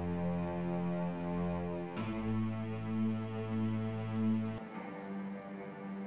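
Software strings in FL Studio playing long held single notes that follow the root notes of a chord progression, one note per bar. The note changes about two seconds in and again shortly before five seconds.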